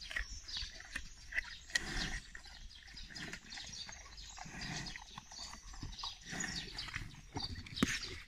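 A brown bear chewing apples: irregular, crisp crunching.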